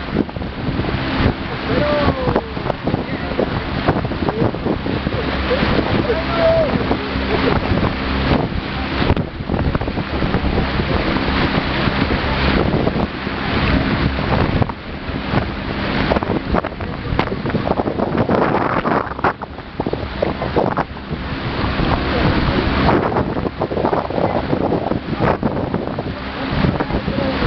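Wind rushing over the microphone in a steady, loud roar, with a low, even motor hum underneath and a few indistinct voices.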